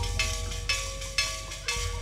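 Live sandiwara pit-ensemble music: hand drums and cymbal strokes about twice a second over held melodic notes and a low bass pulse.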